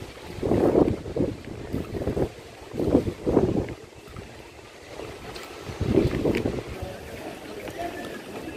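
Wind buffeting a phone's microphone in irregular low gusts, about four of them, over a steady outdoor hiss.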